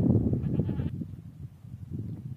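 A goat bleating once, a short call about half a second in, amid the grazing herd.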